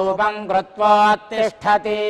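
A male voice chanting a Vedic blessing mantra, the syllables recited on a few steady pitches, with a long held note starting near the end.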